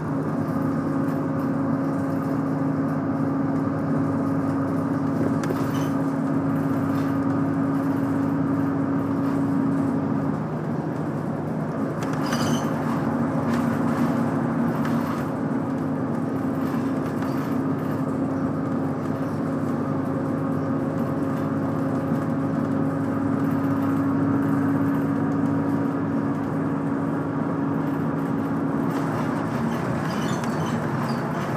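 Route bus diesel engine and road noise heard from inside the cabin as the bus cruises: a steady droning engine note over tyre noise. About ten seconds in, the engine note dips for a moment and then resumes, with a brief rattle.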